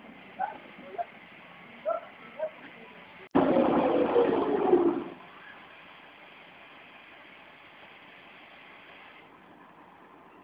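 A few brief voice-like sounds, then a vehicle engine comes in suddenly and runs loudly for about two seconds, falling in pitch as it eases off, leaving a steady low background noise.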